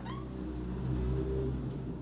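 A low, steady hum that swells a little mid-way and eases off again, with a brief rising squeak right at the start.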